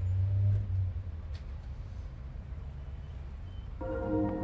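A low rumble of vehicle noise, loudest in the first second and then steady, with a few faint clicks. Music comes in just before the end.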